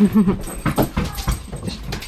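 A dog leaping off a bed after a thrown ball: a quick run of thumps and paw taps on the floor, with a short laugh at the very start.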